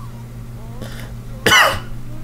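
A single short cough about one and a half seconds in, much louder than the low background, over a steady electrical hum.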